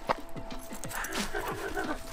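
A dog vocalizing briefly during play over a stick, from about a second in, over background music with a steady repeating beat. A sharp click comes just after the start.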